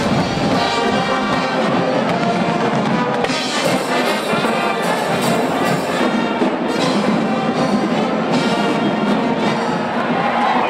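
Brass band music playing loudly and continuously, with many instruments sounding together.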